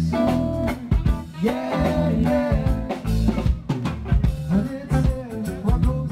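Live band music: a man singing lead into a microphone over a drum kit and other instruments.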